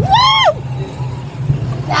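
A rider's short high-pitched yell, rising then falling, in the first half-second, over the steady low rumble of a moving roller coaster.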